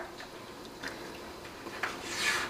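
Faint handling sounds: metal tongs ticking lightly as a steamed artichoke is lifted out of a pan of cooking liquid, with a couple of small clicks.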